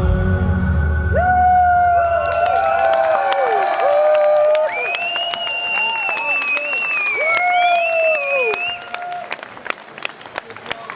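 A synth-pop song's last low bass chord dies away over the first few seconds, and the concert audience cheers, whoops and whistles, with long held whistles in the middle. Scattered claps come near the end as the cheering fades.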